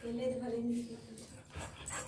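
A dog whining: one steady held whine about a second long, followed by a couple of faint short sounds.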